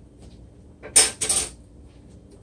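Kitchen clatter: a sharp click about a second in, then a brief bright rattle, as kitchenware or seasoning containers are handled.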